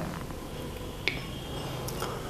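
Quiet room tone with one short, sharp click about a second in and a fainter tick near the end.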